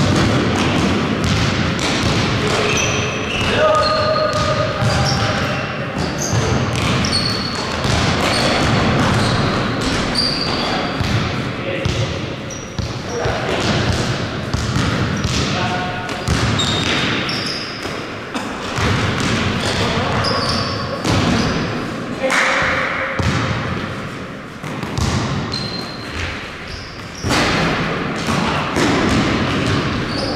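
Basketball bouncing and knocking on a sports-hall court during play, many times over, with brief high squeaks and indistinct players' voices ringing in the large hall.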